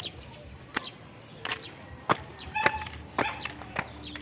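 Rubber flip-flops slapping on concrete with each walking step, a sharp slap about every half second or so.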